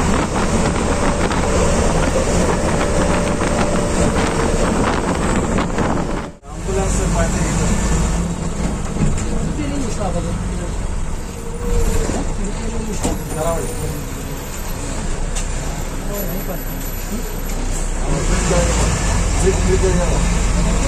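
Steady road and wind noise through the open window of a non-AC sleeper bus on the move. This cuts off suddenly about a third of the way in, and the bus's engine is then heard idling from inside the driver's cabin at a toll booth. It grows louder near the end as the bus pulls away.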